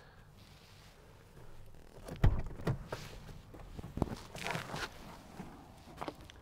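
Knocks and rustling as a man shifts across the rear seat of a Jeep Wrangler and climbs out through the rear door: a couple of sharp knocks about two seconds in, another near four seconds, then a brief rustle.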